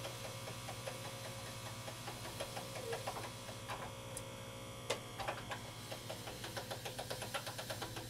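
Hand-cranked pasta machine turning slowly as plasticine clay is rolled through its steel rollers: faint, rapid ticking from the crank and gears, with one sharper click about five seconds in, over a steady electrical hum.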